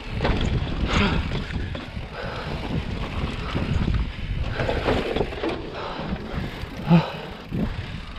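Mountain bike rolling fast over sandstone slickrock: tyre noise and rattling from the bike, with wind buffeting the camera's microphone. Scattered knocks from the wheels striking rock ledges, the loudest a sharp knock about seven seconds in.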